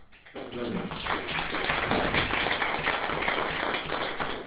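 Audience applauding, a dense crowd clapping that starts about a third of a second in, right as a panel speaker finishes.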